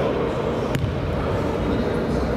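A basketball bounced once on a hardwood gym floor, a single sharp knock a little under a second in, as the shooter dribbles before a free throw. Steady indoor sports-hall noise runs underneath.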